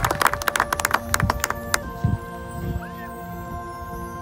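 Marching band show music: a spell of sharp, rapid percussive clicks over held tones gives way, about two seconds in, to a soft, steady chord sustained to the end.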